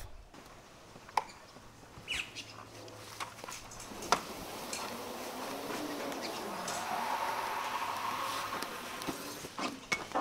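A few sharp clicks and knocks from a caravan roll-out awning's metal support arms being handled and unclipped, the clearest about four seconds in. Under them a rustling noise swells through the middle and eases near the end.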